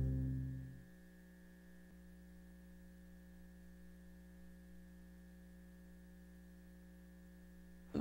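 The tail of background music fades out in the first second, leaving a faint, steady electrical mains hum.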